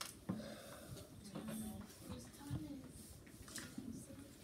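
Quiet, indistinct talking, with one sharp click about a third of a second in.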